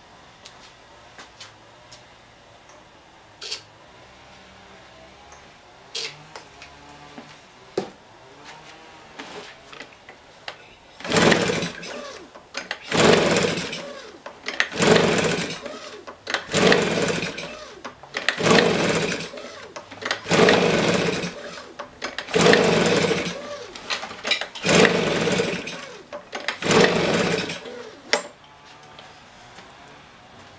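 Husqvarna 150BT leaf blower's two-stroke engine being pull-started over and over, about nine pulls roughly two seconds apart, cranking without catching. The engine has poor compression, which the mechanic blames on a broken piston ring.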